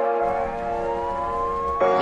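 A police siren slowly winding up in one long rising wail over a sustained music chord, as a sound effect in a song intro.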